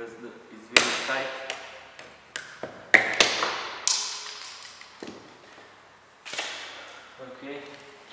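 Plastic clips of a car's interior door-handle trim cover snapping loose as it is pried off with a plastic trim removal tool: a few sharp snaps, the loudest about a second in and about three seconds in, with more clicks through the middle and one near six seconds.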